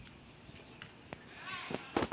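A few soft, irregular taps and handling noise from a phone carried by someone walking. A short voice sound comes near the end.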